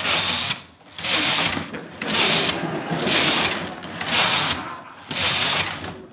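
Carriage of a 1970s Brother domestic knitting machine being pushed back and forth across the needle bed. It makes a rasping mechanical clatter on each pass, about six passes at roughly one a second.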